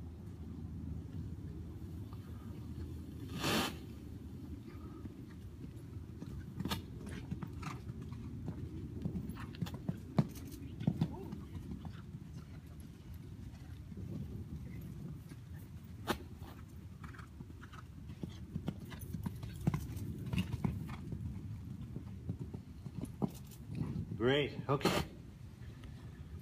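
Horse cantering over sand arena footing: irregular muffled hoofbeats and scattered thuds, over a steady low rumble.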